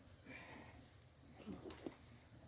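Near silence, with faint rustling and a light click near the end from hands handling a woven-wire fence.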